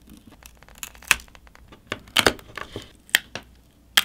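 ROG Phone 3's cracked AMOLED display being pried off the frame with a metal pry tool, its adhesive letting go in sharp snaps and crackles. There are loud snaps roughly once a second, with small crackles between them.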